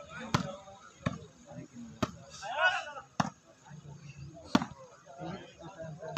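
A volleyball struck hard by hand again and again during a rally, five sharp smacks roughly a second apart, the loudest near the end. A man shouts briefly midway.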